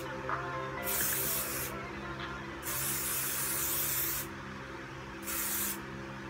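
Aerosol spray can hissing in three separate bursts, each starting and stopping sharply and lasting from about half a second to a second and a half, over faint background music.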